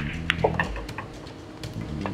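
Sharp clicks of a pool cue and balls, the loudest right at the start and a few fainter ones after, over low sustained background music.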